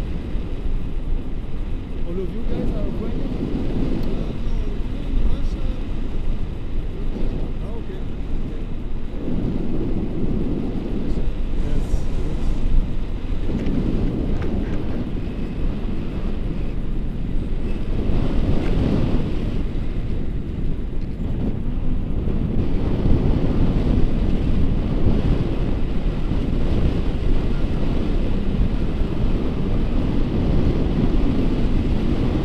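Wind buffeting the camera microphone in paraglider flight: a loud, low, steady rumble that swells and eases every few seconds.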